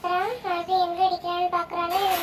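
A child's voice singing a repetitive chant of short, level notes in quick succession, with one rising note about half a second in.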